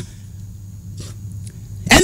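A pause in the talk, filled with a low steady hum.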